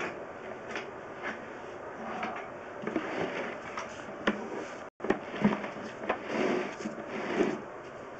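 Scattered knocks, clicks and scraping from a sewer inspection camera and its push rod being handled and pulled back through a clay drain pipe. The sound cuts out completely for a moment about five seconds in, and the knocking is busier and louder after that.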